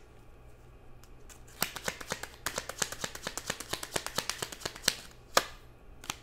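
A deck of tarot cards shuffled by hand: a rapid run of papery card clicks for about three seconds, then one sharper snap near the end.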